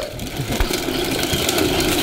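Hard plastic wheels of a toddler's ride-on trike rolling over a concrete path, making a steady rattle of many small clicks.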